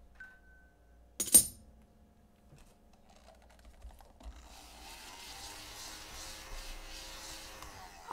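Scratch-off lottery tickets being handled on a desk: one sharp tap about a second in, then a soft paper rustling from about four seconds in.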